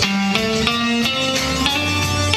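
Electric guitar playing a single-note melody, a run of separately picked notes, several a second.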